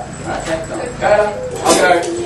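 Voices talking with indistinct words, with a short, sharper outburst near the end.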